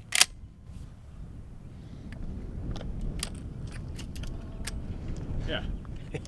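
A sharp metallic click as a .410 shell is pushed through the loading gate into the magazine tube of a Henry Axe lever-action shotgun. Several fainter clicks of the gun being handled follow over a low rumble.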